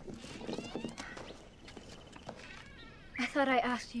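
A domestic animal gives one loud, wavering cry lasting under a second near the end, with fainter calls in the first second.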